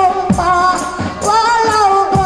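Hadrah music: a child's voice sings a devotional melody through a microphone over steady beats on rebana frame drums.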